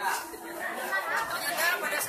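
Several people talking at once: indistinct chatter of voices.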